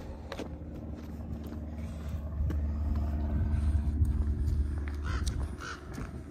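A low engine-like hum swells and then fades across the middle, like a motor vehicle passing unseen. Near the end come three short bird calls about half a second apart.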